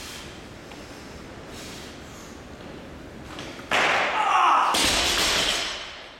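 Loaded Olympic barbell with bumper plates dropped onto the gym floor after a lift: a heavy thud near the end, followed by about a second of clatter from the bar and plates. A sudden burst of noise begins just under a second before the thud.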